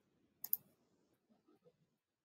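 Two quick, sharp clicks a fraction of a second apart, like a double click, in otherwise near silence.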